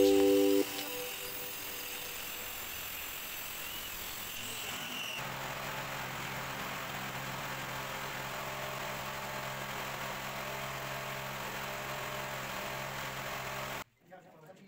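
A mallet-percussion chime dies away in the first half-second, then a faint steady hiss with a thin high tone. About five seconds in it changes suddenly to a steady low hum, which cuts off just before the end.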